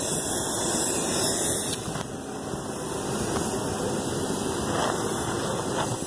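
Steady roadside traffic noise: vehicles on the street nearby, heard as an even rushing hiss with no sharp events.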